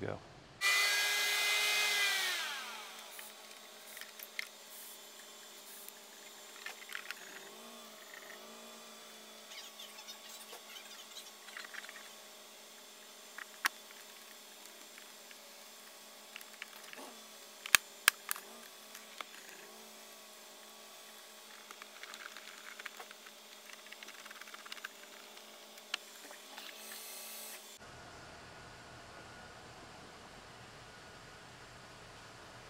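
A short, loud whine falling in pitch at the start, then scattered light clicks and snaps of plastic instrument cluster parts being handled and fitted together.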